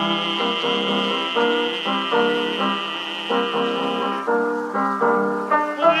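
Tenor voice holding the last word of a line ("me") as one long note with vibrato over piano accompaniment, from a 1920s 78 rpm record. The voice stops about four seconds in and the piano plays on alone for a couple of seconds.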